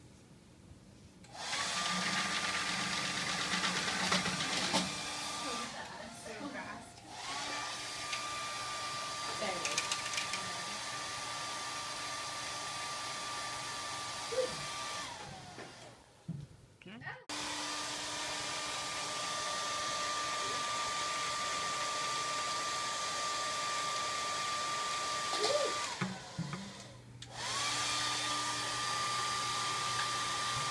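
Handheld hair dryer blowing with a steady whine, switched on and off in four long runs with short breaks between. Its pitch rises as it starts and falls away as it stops.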